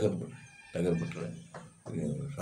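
A man speaking in short phrases with pauses between them. Faint thin high tones run underneath during the first second.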